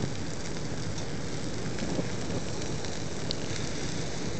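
Wood-ember asado fire burning with a steady hiss and scattered small crackles, a plastic-like pencil alight in the flames. One brief high whistle a little after three seconds.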